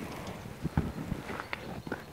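Footsteps crunching on a path strewn with graupel and dry twigs: several short, uneven steps.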